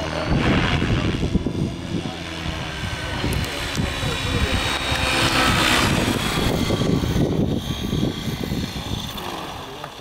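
Align T-Rex 550 Pro radio-controlled helicopter in flight: rotor blades swishing over a high, thin drivetrain whine, loudest as it passes close about five to six seconds in. Wind rumbles on the microphone underneath.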